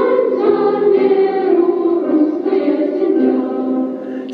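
A choir singing slow, sustained chords as background music, the pitch changing every second or two.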